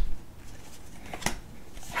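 Pokémon trading cards and a booster-pack wrapper being handled: a sharp snap at the start, then quiet card handling with a couple of light clicks a little past a second in.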